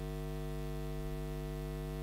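Steady electrical mains hum in the church's sound system: a constant low buzz with a stack of even overtones that does not change.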